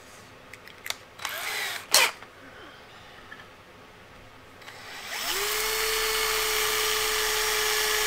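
Cordless drill spinning up about five seconds in and then running at a steady pitch as it drills into a steel bracket. Before it starts there are a few short clicks and a knock, about two seconds in.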